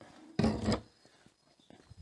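Handling noise from a plastic rear light cluster being set down in a car boot: a brief rub and knock about half a second in, then a few faint clicks near the end.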